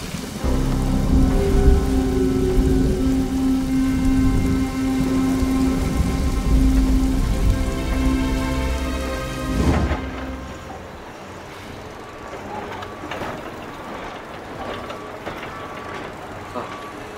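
Rain and thunder with held music tones over them, ending suddenly about two-thirds of the way through, after which only a quieter outdoor background remains.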